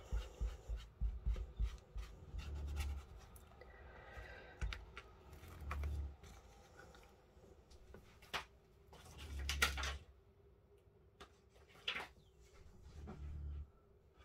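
Crafting handling noises: rubbing over a clear stamp pressed onto card, then scattered clicks, knocks and soft thumps as the stamp and card are lifted and moved on a cutting mat, loudest a little past the middle.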